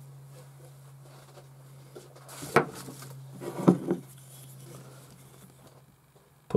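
Two sharp wooden knocks about a second apart as the wooden-bodied Japanese block plane is handled, over a steady low hum.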